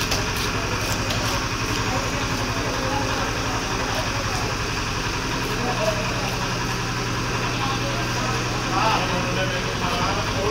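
Knife scraping the scales off a large carp in repeated strokes on a wooden chopping block. Under it runs a steady mechanical hum, like a motor or engine running.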